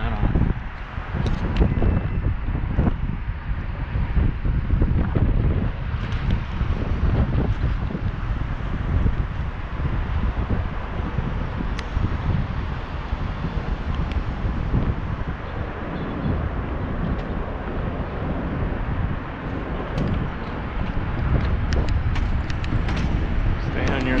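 Wind buffeting the microphone of a camera worn by a moving cyclist, a low, uneven rumble that rises and falls.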